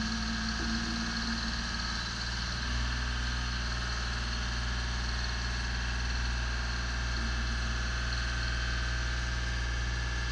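Genie Z-62/40 articulating boom lift's engine running steadily while the boom is operated. The low hum gets louder about three seconds in and stays there.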